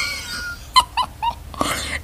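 A woman laughing hard: a high-pitched laugh that falls away, then a quick run of short laugh pulses about a second in, and a breathy gasp near the end.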